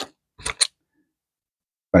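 Lincoln cents clicking as they are handled: one short click, then two more in quick succession about half a second later.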